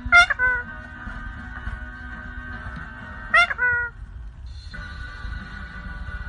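Ring-necked parakeet giving two sharp, meow-like calls about three seconds apart, each rising then falling in pitch.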